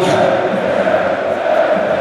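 Large football crowd chanting in unison: thousands of supporters in the stands holding one sung note, loud and steady.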